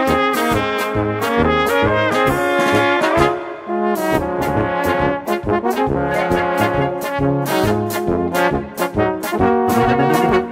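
Brass band playing an instrumental polka: trumpets and flugelhorns carry the melody over a steady oom-pah accompaniment from tubas. The music dips briefly about three and a half seconds in before the next phrase.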